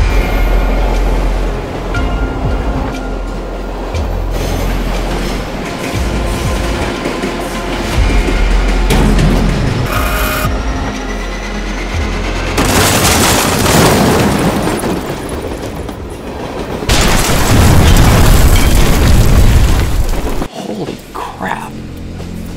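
Dramatic score music with explosion and crash sound effects: heavy booms and long, loud rumbling noise, loudest in two stretches in the second half, cutting off suddenly shortly before the end.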